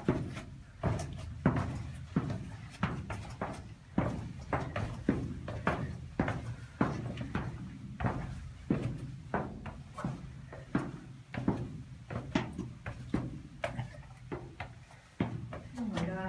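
Footsteps on the stone floor of a narrow rock-cut tunnel, about two steps a second, each step a short knock with a little echo.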